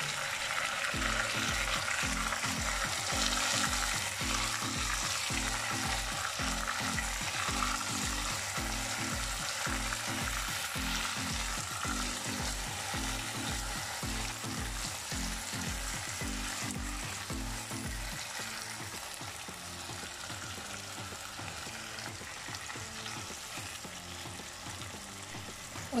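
Marinated chicken pieces and onions frying in hot desi ghee in a wok: a steady sizzle, loudest early on and slowly dying down.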